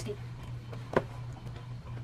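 Scissors snipping through a cardboard box's packaging: one sharp snip about a second in, with a few fainter clicks. A steady low hum runs underneath.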